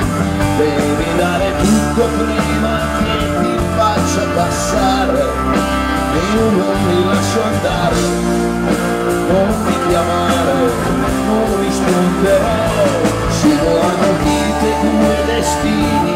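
Live rock band playing at full, steady level: electric guitars and bass over a driving beat.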